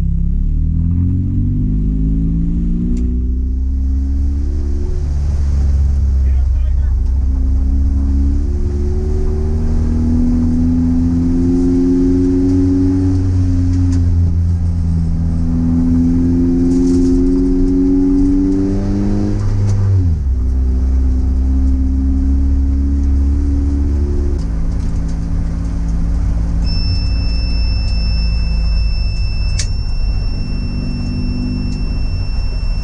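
Race car engine heard from inside the stripped, caged cabin, running at low road speed. Its revs rise over the first few seconds, then hold and change step several times, with a sharp drop in revs about 20 s in. Near the end a steady high-pitched whine starts and keeps going.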